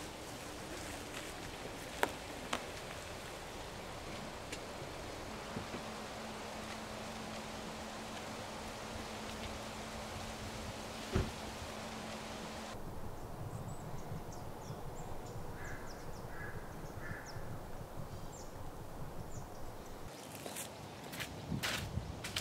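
Quiet forest ambience with a few sharp clicks. From about halfway, footsteps rustle and crunch through dry fallen leaves, with a few short bird calls, and sharp clicks come near the end.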